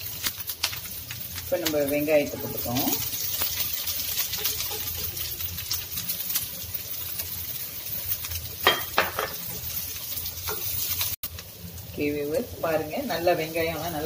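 Oil sizzling steadily in a nonstick frying pan with green chillies and seeds, stirred by a wooden spatula that scrapes and taps the pan. Around the middle, chopped onions are tipped in from a bowl.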